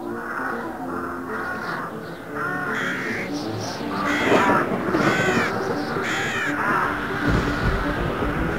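A crow cawing repeatedly, harsh calls in quick pairs starting about two and a half seconds in, over a music soundtrack. A deep rumble comes in near the end.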